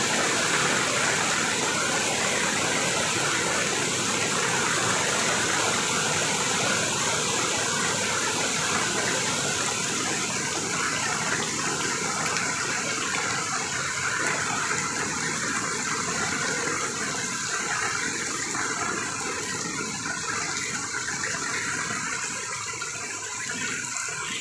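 Floodwater rushing in a fast, turbulent current across a paved road, a steady, even rush of water that grows slightly fainter in the second half.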